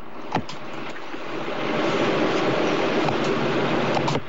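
A single click, then a steady hiss of telephone-line noise that swells about a second in, as the studio phone line switches from one caller to the next.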